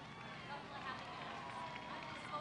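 Indistinct voices of several people talking at once, fairly faint.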